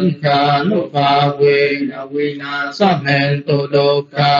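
A man's voice chanting Buddhist verses in Pali, holding each syllable on a steady pitch in a monotone recitation.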